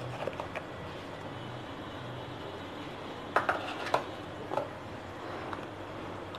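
A few light clicks and taps of kitchen utensils on steel dishes, around the middle, over a steady low hiss.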